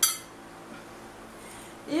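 A single light clink of a porcelain dinner plate right at the start, dying away quickly, as a ringed napkin is set down on it. A woman's voice starts right at the end.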